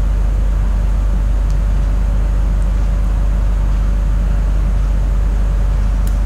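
Steady low rumble of background hum with a faint higher tone, unchanging throughout.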